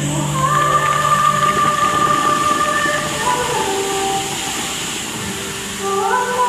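Water jets of a large musical fountain rushing and splashing under music, which holds a few long notes that step in pitch. The rushing is thickest in the first half and eases toward the end.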